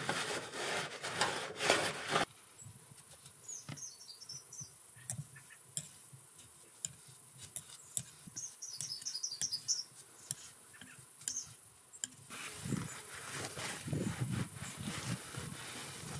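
Cloth rustling and rubbing as soap leak-detector solution is wiped off gas pipe fittings, in short handling bursts at the start and a longer stretch near the end. In the quieter middle there are light ticks and two brief clusters of faint high chirping.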